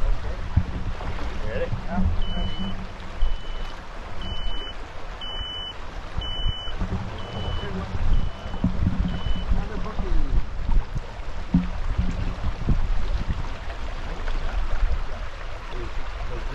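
A backpack electrofisher's warning tone beeping about once a second, eight short beeps at one pitch, while current is put into the water through the anode. Under it runs the rush of a shallow stream and the splashing of wading.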